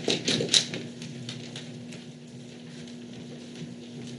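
A few sharp clicks and taps in the first second, then quiet room tone with a steady low electrical hum.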